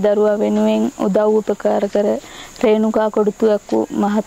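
A woman talking, over a steady, high-pitched drone of insects that runs on without a break.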